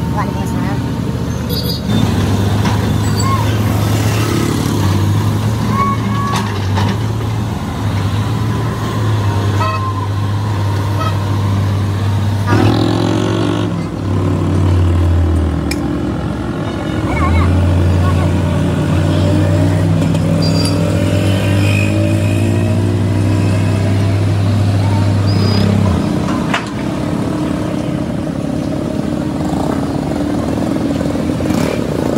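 Diesel engine of heavy construction machinery running, a steady low drone from about two seconds in that shifts in pitch midway and drops away a few seconds before the end. Short horn toots and voices sound over the street traffic.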